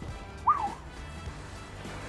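Background music under an edited teaser, with one short high vocal sound about half a second in that rises briefly and then falls.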